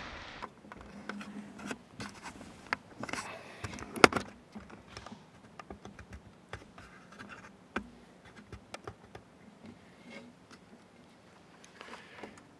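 Close handling noise from a camera and gear: scattered scrapes, rustles and small clicks, with one sharp click about four seconds in.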